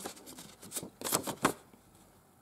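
Paper rustling and crinkling as a paper dollar bill is handled and turned over, a few short crackles about a second in.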